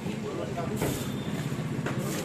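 Outdoor live field audio: indistinct voices over a steady low rumble, with two brief hissing bursts about a second apart.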